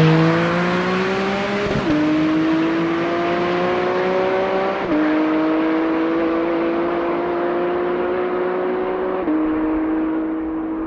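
Porsche 718 Cayman GT4 RS's naturally aspirated 4.0-litre flat-six at full throttle, accelerating hard away. Its pitch climbs in each gear and drops at three quick dual-clutch upshifts, about 2, 5 and 9 seconds in. The sound is loudest at the start and fades as the car pulls away.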